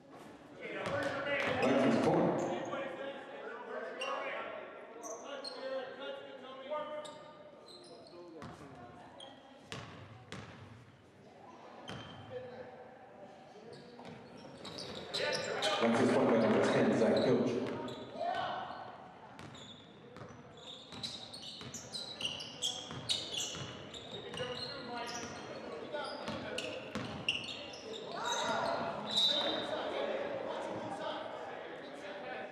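Basketball bouncing on a hardwood gym floor with sneakers squeaking, under the voices of players and a small crowd echoing in a large hall. There are two louder swells of shouting, about a second in and around the middle.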